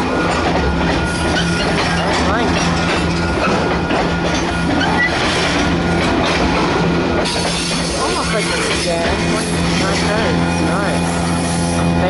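Freight train's covered hopper cars rolling past close by, wheels running on the rail with some squealing. A steady set of held tones runs underneath.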